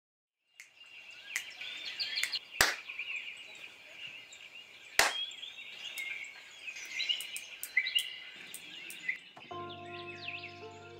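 Birds chirping and twittering, broken by two loud sharp clicks a couple of seconds apart and a few fainter ones. Near the end a held keyboard chord of several notes comes in.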